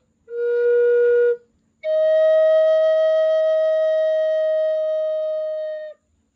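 Wooden end-blown flute tuned to 432 Hz playing a short low note, then, after a brief breath, one long held higher note of about four seconds that ends the phrase.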